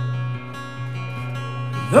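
Acoustic guitar strummed with no singing, a low note ringing under the chord; it gets a little quieter about half a second in.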